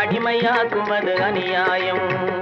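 Old Tamil film song: a male voice sings a wavering melody over orchestral accompaniment, with tabla strokes whose low drum pitch bends.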